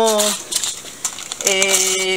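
Parchment baking paper and aluminium foil crinkling as hands handle them around the edge of a baking dish, heard between spoken words.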